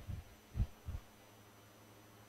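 Two soft, low thumps about a third of a second apart, followed by a faint steady low electrical hum.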